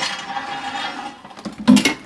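An old metal pedestal chair scraping and squeaking as it is tipped and shifted, then one sharp, loud clunk near the end.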